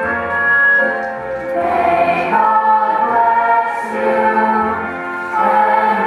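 A children's stage chorus singing a slow song in long held notes, with a low accompaniment sounding underneath.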